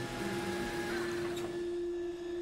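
Steady hum of a large electric drainage-pump motor, with one held tone throughout and a fainter higher tone that fades out about a second in.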